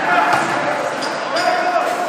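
Ice hockey rink sounds: raised voices calling out, one held call near the end, with a few sharp knocks of sticks and puck, all echoing in the arena.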